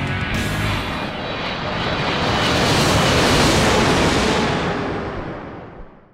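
Rock music ends in the first second, then the rushing noise of a jet aircraft rises to a peak about three seconds in and fades away near the end.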